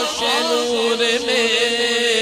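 Male voice singing a devotional kalam (manqabat in praise of Ali) into a microphone. Quick ornamented turns lead into a long held note that begins about a quarter of a second in and carries on, wavering slightly.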